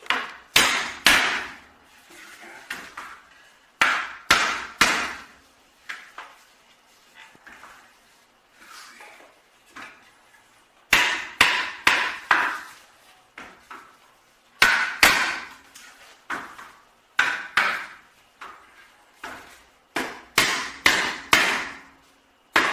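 Claw hammer tapping the corner joints of a wooden canvas stretcher-strip frame: runs of sharp, light knocks with pauses between, driving the joints together until they sit flush and square.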